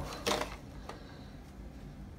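Brief handling noise from a hard plastic card case held in the hand: a short rustle about a quarter second in and a faint click near one second, then low room hum.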